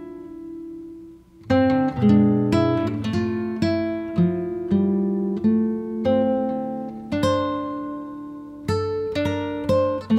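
Background music on acoustic guitar: plucked notes ringing and fading one after another. The playing thins out briefly about a second in, then picks up again with a new note roughly every half second.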